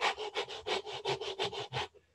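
A man breathing in and out fast and hard, about six or seven quick noisy breaths a second, stopping near the end: a demonstration of hyperventilation.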